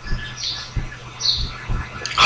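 Two short, high bird chirps about three-quarters of a second apart, over a steady low hum and a few soft low thumps.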